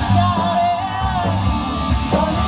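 Live rock band playing through a stage PA: electric guitar, drums and keyboard, with a woman singing lead in long held notes.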